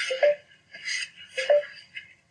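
Epson desktop inkjet printer printing onto PET film: the print-head carriage makes two passes about a second and a quarter apart, each a short mechanical whirr with a brief rising whine.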